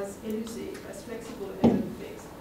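A woman speaking at a lectern microphone, with a single sharp knock about one and a half seconds in that is louder than her voice.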